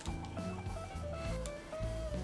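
Quiet background music: a simple melody of single notes stepping up and down over a steady low bass line.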